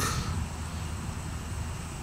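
A pause in speech: steady, low outdoor background noise with a faint low hum and no distinct events.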